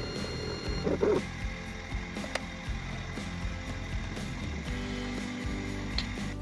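Desktop laser engraver's gantry stepper motors moving the laser head in short jerky strokes, giving a clicking, ratchet-like mechanical sound as the engraving finishes.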